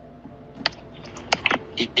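A handful of light, irregularly spaced clicks over a faint steady hum.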